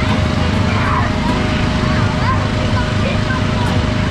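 Inflatable bounce house's electric blower fan running with a steady low rumble and hum, with children's shouts and calls over it.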